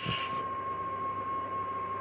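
A steady tone held at one pitch, whistle-like, over a constant background hiss and hum.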